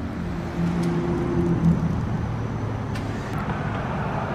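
Street traffic: steady road noise from passing motor vehicles, with a low engine hum in the first couple of seconds.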